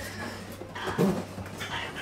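A dog making short whimpering and yipping sounds, the loudest about a second in.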